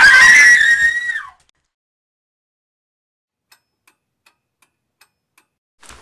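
A shrill, high-pitched scream lasting about a second that breaks off with a falling pitch. Then a few faint ticks follow, a little under half a second apart.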